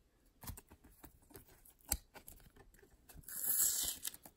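Blue painter's tape being peeled off a plastic card top loader, a rasping strip of noise about three seconds in that lasts nearly a second. Before it, a few light clicks and taps of the plastic holders being handled.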